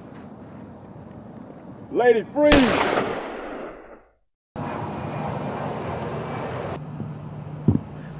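A single gunshot right after a shout, ringing out and fading over about a second and a half. After a moment of silence, a steady hiss follows.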